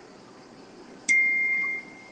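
A single high chime about a second in: one clear tone with a sharp start that rings for under a second and fades away.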